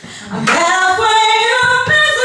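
Two women singing into microphones, with no clear accompaniment. The voices come in about half a second in after a brief lull, sliding up into a note and then holding long notes.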